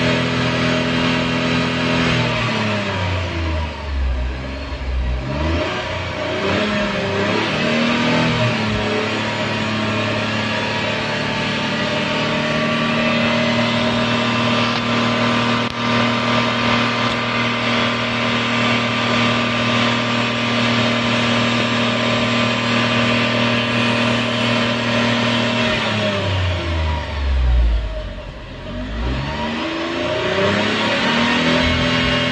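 Tata Tigor's three-cylinder engine revved hard and held at high revs. About two seconds in the revs fall away and climb back up. They then hold steady until they drop and rise again near the end.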